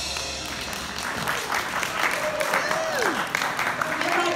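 Audience applause after a brass band's final chord, which dies away at the start. About three seconds in, a voice calls out with a steeply falling pitch.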